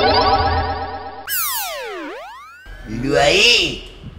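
Cartoon-style comedy sound effects: a wobbling synth tone, then a swooping glide that falls and rises again like a boing, followed near the end by a warbling, voice-like sound.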